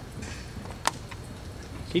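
Hoofbeats of a horse galloping on arena dirt, soft and faint, with one sharper click a little before a second in.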